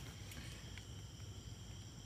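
Near-quiet background: a faint steady hiss with several thin, high-pitched steady tones running through it, and a faint tick or two.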